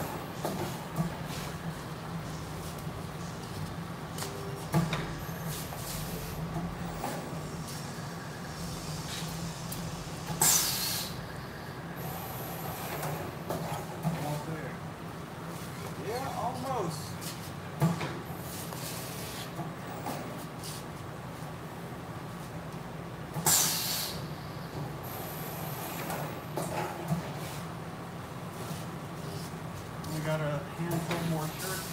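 Work sounds at a manual carousel screen printing press: scattered knocks and clatter of the press and shirts being handled over a steady low hum. Two short, loud hissing bursts come about ten seconds in and again about twenty-three seconds in.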